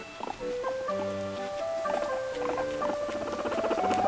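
A guinea pig making short bursts of rapid pulsed sounds, with a longer, denser run near the end as it is stroked, over background music.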